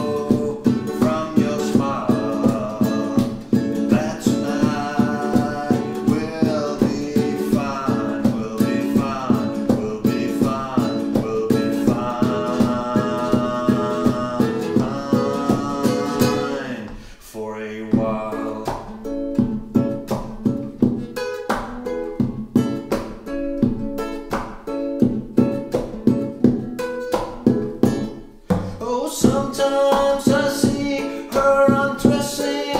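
Two nylon-string classical guitars strummed steadily in a folk-song accompaniment, with a wordless sung or hummed melody over them for roughly the first half. After that the guitars carry on alone.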